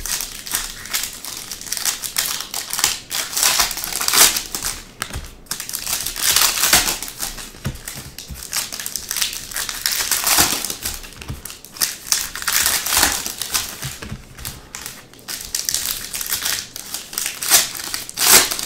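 Foil trading-card pack wrappers crinkling and tearing as they are slit with a pointed tool and pulled open, in irregular bursts of rustling.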